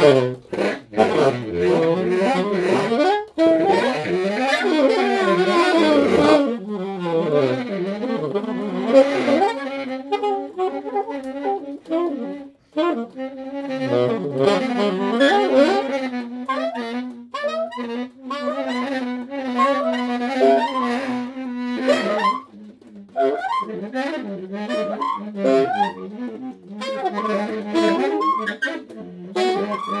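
Baritone and tenor saxophones playing together: gliding, overlapping lines, a breathy, noisy passage a few seconds in, then a long held low note with a wavering higher line above it through the middle before the lines break up again near the end.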